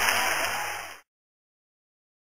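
Audience applauding, fading down and cutting off about a second in, leaving silence. A low steady hum runs under it.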